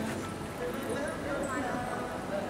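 A horse's hooves beating on sand footing as it canters, heard under indistinct voices in a large hall.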